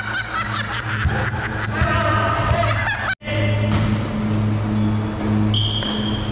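Background music with a steady, pulsing bass line, with voices over the first couple of seconds. The sound cuts out completely for an instant about three seconds in, then the music carries on.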